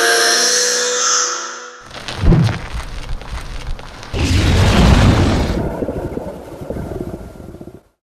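End-card sound-design sting: a held musical chord cuts off about two seconds in and gives way to a sudden boom and scraping, crackling noise, then a louder low rumbling swell about halfway through that fades out just before the end.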